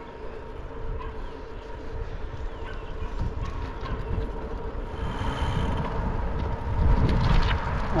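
Wind buffeting the microphone of a camera on a moving bicycle, over steady road and tyre noise. It gets louder and gustier about two-thirds of the way through.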